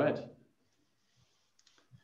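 A man says "right", then a few faint, sharp clicks sound near the end.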